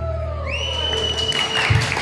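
The last note of a band led by button accordion and bass guitar dies away, and the audience applauds. A single long whistle rises and holds for about a second.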